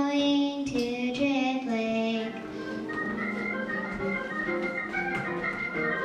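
A girl singing solo into a microphone for about the first two seconds, then music of held electronic organ chords takes over.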